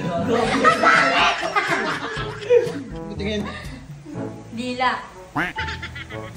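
A group of people laughing and giggling over background music.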